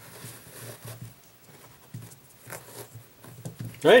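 Faint rustling and light scuffing of hands working a shoe's laces, pulling them through the eyelets to even them up.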